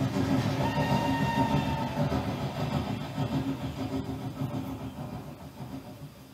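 Train running on rails, a steady rumble that fades away toward the end, with a faint high tone sounding for about a second and a half near the start.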